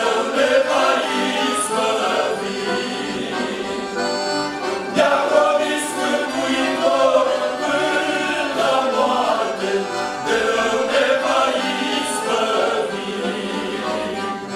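Men's vocal group singing a Christian hymn in Romanian, accompanied by two accordions.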